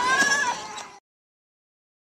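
A child's high-pitched, wavering squeal, fading out within the first second and followed by complete silence.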